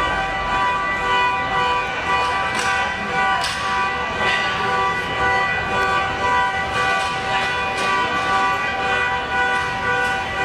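A steady horn-like chord of several held tones that does not change through the whole stretch, over indoor crowd chatter, with a few short knocks a few seconds in.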